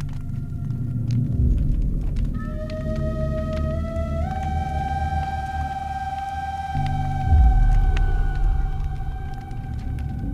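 Electro-acoustic music: a long held tone that steps up in pitch about two and four seconds in, over a low drone that swells twice.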